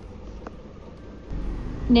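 A pause in the speech filled by a low background rumble that gets louder about halfway through, with a faint click near the start.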